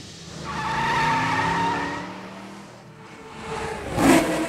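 Tire-squeal screech sound effect that swells in and fades over about two seconds, followed by a rising whoosh near the end.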